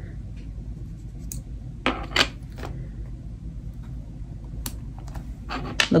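A few light clicks and taps from stationery being handled and placed on a journal page, the loudest pair about two seconds in and a few more near the end, over a steady low hum.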